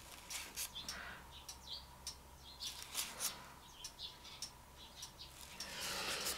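Faint, scattered short chirps and light ticks.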